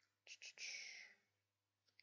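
A man's short breathy, whispered vocal sound with a couple of faint lip clicks, lasting about two-thirds of a second starting a quarter second in.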